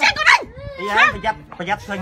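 Raised voices in a heated verbal argument, some rising high in pitch about a second in.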